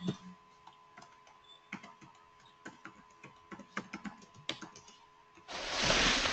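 Computer keyboard typing: scattered, irregular keystroke clicks, fairly faint. Near the end a louder rush of noise about a second long covers them.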